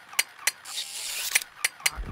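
Cartoon wind-up toy monkey clashing its cymbals: a hissing crash about half a second in, lasting most of a second, with sharp mechanical clicks before and after it.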